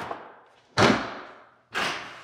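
Removed plastic side-trim strips thrown into a plastic wheelie bin: a sharp thud about a second in that dies away, then a second thump near the end.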